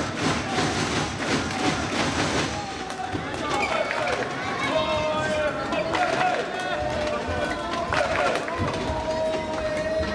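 Shuttlecock struck back and forth in a women's doubles badminton rally, sharp hits and short squeaks over an arena crowd's voices and cheering, with held chanting or horn-like tones from about four seconds in.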